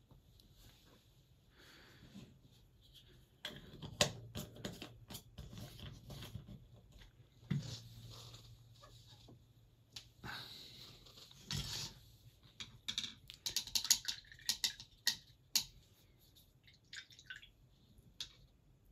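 Scattered light clicks and taps of small painting tools and pots being handled on a hobby desk, with a run of quick clicks near the end.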